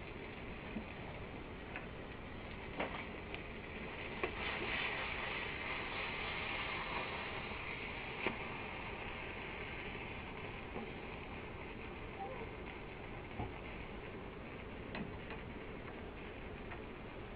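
Fat sizzling in a hot nonstick frying pan, with scattered sharp pops and clicks. The sizzle swells for a few seconds a quarter of the way in.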